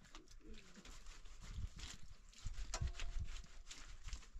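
A faint animal call about three seconds in, over low rumbling and scattered clicks and knocks.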